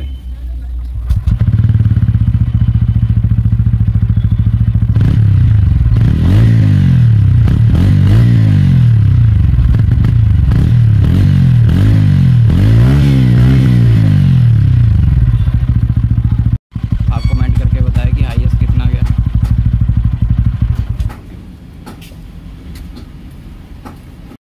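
TVS Ronin 225's single-cylinder engine starting about a second in and idling, then revved with five or six throttle blips, each rising and falling in pitch. It settles back to idle and shuts off near the end.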